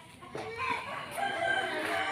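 A rooster crowing: one long, drawn-out call that begins shortly after the start.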